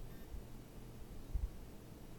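Quiet room tone: faint hiss and low rumble, with one soft low thump about one and a half seconds in.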